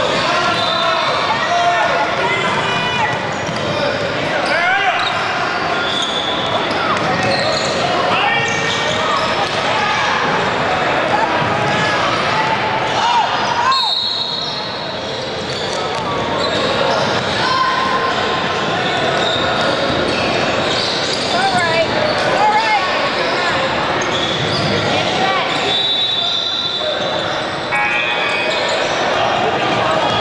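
Basketball game sounds in a large hardwood-floored gym: many overlapping voices of players and spectators, with a basketball being dribbled on the court.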